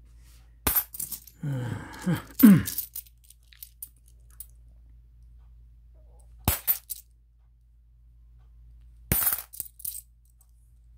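500-won coins clinking against one another as they are handled and set down, in three clusters of clinks: about a second in, about six and a half seconds in, and about nine seconds in. A short falling vocal sound comes around two seconds in.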